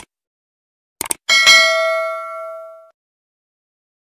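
Two quick mouse-click sound effects, then a bright bell ding that rings with several tones and fades out over about a second and a half. This is the click-and-notification-bell sound effect of an animated subscribe button.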